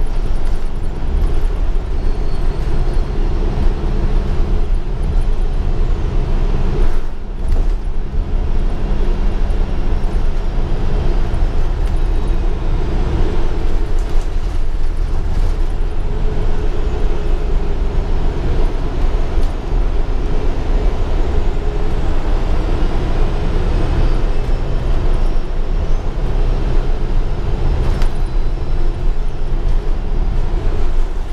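Interior sound of a 2015 Gillig Advantage transit bus under way: the engine and drivetrain running steadily over a constant hum of road noise. The sound dips briefly about seven seconds in, and the engine note shifts a few seconds later.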